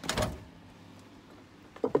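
A sliding door being pushed open: a short scraping rush about a third of a second long at the start.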